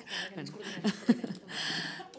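Quiet, broken voices and light laughter from people at a conference table, with a short breathy hiss near the end.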